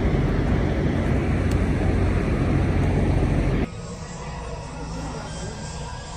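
A steady low rumble of vehicles across a truck stop lot. It cuts off abruptly about three and a half seconds in, leaving a much quieter room with a television playing faintly.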